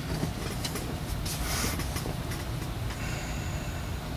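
Steady low background rumble, with faint handling noise from a plastic model-kit sprue being held up and moved, briefly louder about a second and a half in.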